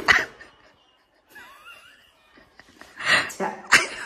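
A woman's short, breathy bursts of laughter: one at the start, then two more near the end, the last one the sharpest.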